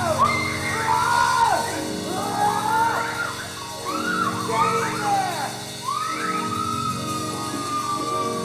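Live band music: a swooping lead line of gliding notes that slide up and down over sustained low keyboard chords, ending on one long held note near the end.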